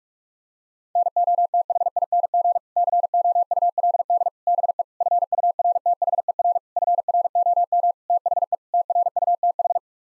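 Morse code at 45 words per minute, sent as a single steady tone keyed in rapid dots and dashes. It starts about a second in and spells out seven words, "nothing could be further from the truth", with a short gap between words.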